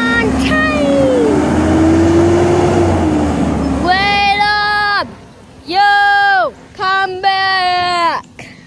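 Garbage truck's engine revving as it pulls away, with a low rumble and a pitch that rises slowly and then falls off. From about halfway through, a child's voice sings several long held notes.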